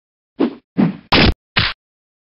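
Four quick hit sound effects of a cartoon fight in rapid succession, the third the loudest and longest.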